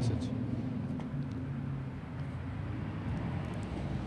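A low, steady background rumble with a faint hum in it, holding level throughout.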